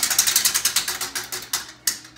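Prize wheel spinning down, its pointer clicking rapidly against the pegs; the clicks slow and stop with a last click near the end.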